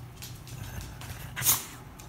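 A dog makes one short, sharp sound, like a huff, about one and a half seconds in. Before it there is soft rustling from a quilted couch cover being pawed and rumpled.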